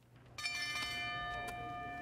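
A metal bell struck once, about half a second in, then ringing on with a slow fade. It is most likely the boxing ring bell, sounded just before the decision is announced.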